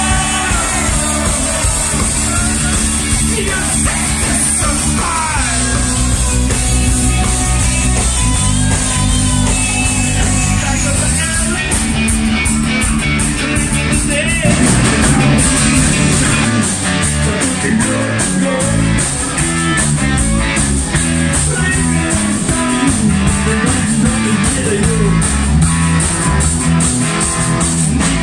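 Rock band playing: electric guitars, bass and drum kit, with a man singing over it. The drum beat comes through more plainly from about halfway through.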